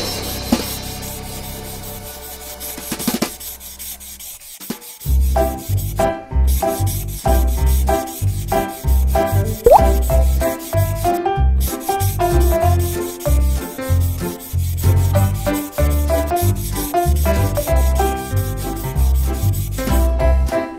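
Blue felt-tip marker rubbing across paper in quick repeated back-and-forth strokes as it colours in, starting about five seconds in, with short squeaks. Before that, a ringing tone fades out.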